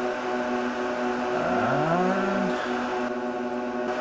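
IBM/Lenovo System x3650 M4 rack server running, its cooling fans giving a steady whir made of several held tones. About a third of the way in, a short tone rises in pitch, holds for a moment and cuts off about halfway through.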